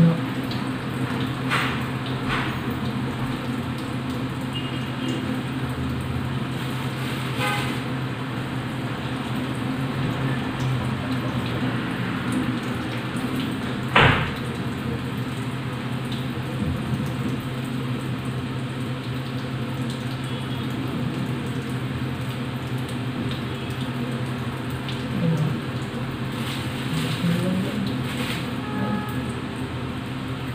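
A steady low mechanical hum runs throughout, with one sharp click about fourteen seconds in.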